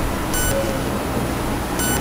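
Steady background room noise with a low hum. A short, high electronic-sounding beep comes twice, about a second and a half apart.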